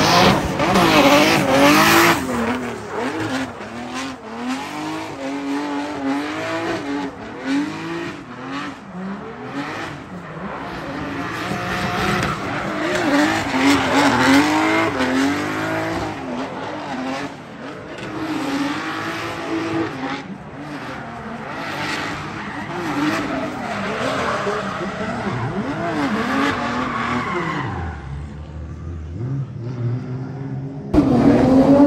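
Drift car at full drift: the engine revs hard, its pitch swinging up and down again and again as the throttle is worked, over tyres squealing and skidding as the rear wheels spin and smoke. Loudest in the first couple of seconds, it eases and drops in pitch near the end.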